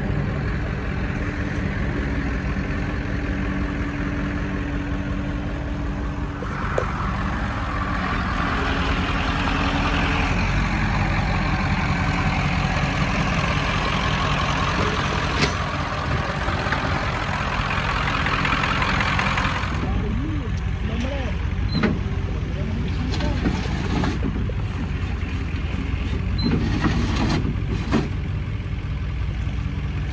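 Rollback tow truck's engine running steadily. A broad rushing noise rises about six seconds in and cuts off sharply near twenty seconds, and a few sharp clicks and knocks follow in the last third.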